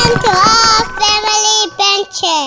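A child singing a short phrase of held notes with gliding pitch between them.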